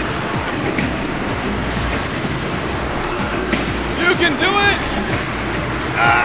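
A steady noise of the wedge combat robot's drive motors and arena crowd as the robot climbs out of a sunken section of the steel floor. A spectator shouts about four seconds in.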